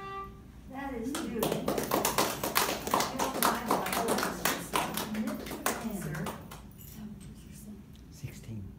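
A held violin note ends just after the start. A small audience then claps for about five seconds, with voices over the applause, before it dies away.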